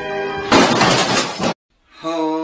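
A held musical chord, then about half a second in a loud crash of shattering glass lasting about a second that cuts off abruptly into a brief silence.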